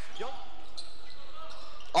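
Gym game sound from a basketball court: a ball dribbling on the hardwood floor, with faint voices in the hall.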